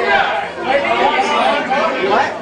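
People talking: overlapping conversation and chatter, with no music.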